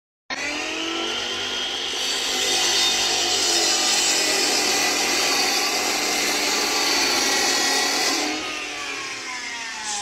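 Cordless chop saw cutting through a brick: the motor starts suddenly and runs with a steady, loud whine while the disc grinds through the brick. About eight seconds in it is let go and the blade spins down, its whine falling in pitch.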